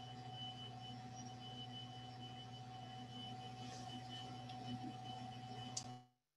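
Faint, steady electrical hum with a few thin steady tones above it: background noise from an open microphone on a video call. Just before the end there is a faint click, and then the sound cuts off to dead silence.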